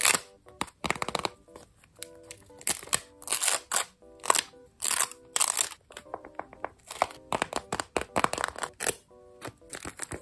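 Paper crinkling and rustling in irregular short bursts as paper flaps are peeled open and a taped paper doll is handled, over soft background music.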